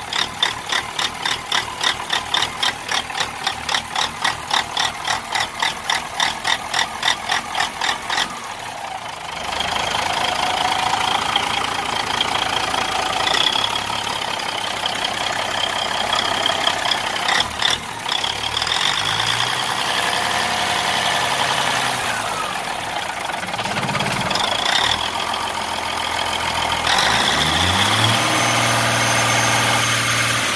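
Caterpillar 3406B inline-six diesel in a 1995 Freightliner FLD 120, an engine the owner calls bad, running. For the first eight seconds it pulses unevenly about three times a second, then settles into steadier, louder running with a high whine. Near the end the revs rise.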